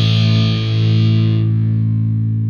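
A rock band's distorted electric guitars hold a final chord, ringing steadily, with the brighter upper tones fading away about one and a half seconds in.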